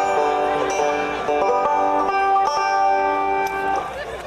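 Banjo strings ringing as the banjo is tuned, several open notes held together and shifting in pitch a few times as the tuning pegs are turned.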